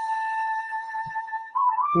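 A flute holding one long, steady note in background music, stepping up in pitch near the end. Right at the end, a low, steady human hum comes in: the bee-like humming of Bhramari pranayama.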